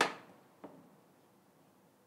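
A spatula knocks once against a frying pan with a short ring that dies away within half a second, followed by a much fainter tap about half a second later.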